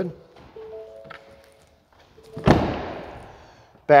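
A pickup truck door shut once with a heavy thunk about two and a half seconds in, its sound dying away slowly in a large room. A few faint held tones come before it.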